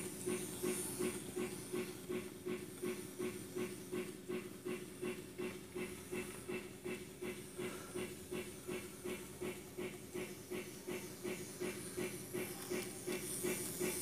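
Simulated steam locomotive chuffing from an MRC Sound Station sound unit, an even beat of hissy chuffs at about three to four a second over a steady hum.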